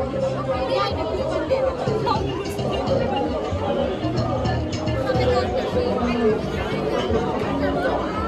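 Crowd chatter over music with held notes and a low bass line.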